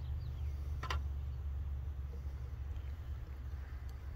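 Wind rumbling on the microphone outdoors, a steady low rumble, with a single light click about a second in.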